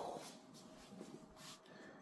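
Near silence: quiet room tone with a faint steady hum.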